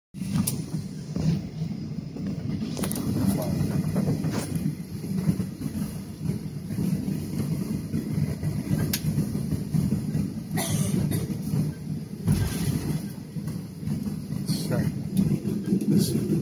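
Indistinct passenger chatter inside an airliner cabin over a steady low cabin hum, with several short knocks and rustles scattered through.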